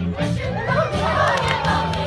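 A large ensemble of voices singing and shouting together over a musical accompaniment with a steady bass line, as in a rousing group number of a stage musical.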